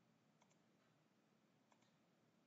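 Faint computer mouse clicks in near silence: two quick pairs of clicks, a little over a second apart.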